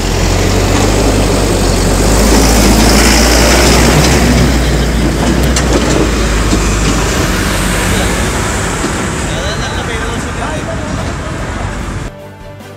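Road traffic with a heavy truck passing close by, its engine a low drone under a loud rush of tyre and road noise that slowly fades over the last few seconds.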